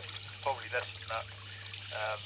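A voice speaking a few short syllables that the transcript does not catch, over a steady low hum.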